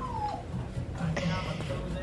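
Puppies in crates whimpering: a short falling whine at the start, then another cry about a second in.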